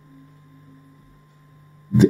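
A faint steady low hum fills a pause in a man's speech, with his voice coming back in near the end.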